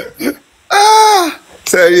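A woman's voice: a couple of short laughing breaths, then one loud, drawn-out high-pitched exclamation that rises and falls in pitch, with speech starting again near the end.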